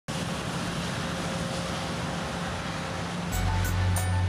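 A steady rushing jet-engine noise. About three and a half seconds in, theme music with a deep bass and sharp percussive hits comes in over it.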